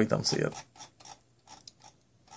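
Computer mouse scroll wheel clicking in a run of light, uneven ticks as a web page is scrolled down, after a voice that trails off in the first half second.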